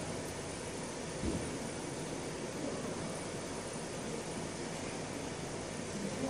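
Steady background noise of running machinery in a workshop, with one brief low knock about a second in.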